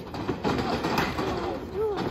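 Indistinct voices of people nearby over a steady background of crowd and outdoor noise.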